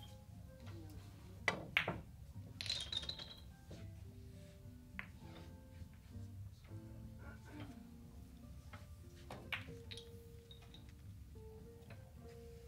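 Sharp clicks of carom billiard balls being struck and colliding, the two loudest close together about a second and a half in, then a quick rattle of clinks around three seconds and single clicks later on. Faint background music runs underneath.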